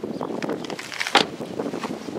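Footsteps crunching on loose gravel, with one sharp click a little over a second in.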